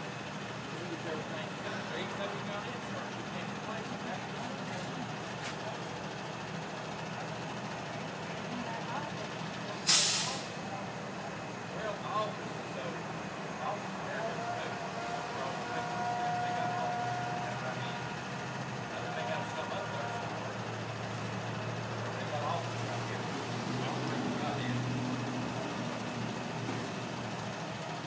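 A heavy truck's engine running with a low steady hum, and one short, loud hiss of air, like an air-brake release, about ten seconds in. A faint steady tone sounds for a few seconds around the middle.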